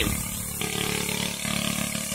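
Small gasoline-engine water pump running steadily, with water spraying from a spray bar and pouring down a sluice box and off its end.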